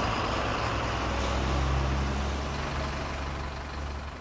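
Cartoon school bus engine sound effect: a steady low engine hum with road noise, growing gradually quieter as the bus drives away.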